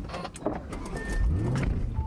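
A man getting into a Lamborghini's driver seat: knocks and rustle of body against the leather seat and door area, with a short electronic chime from the car about a second in.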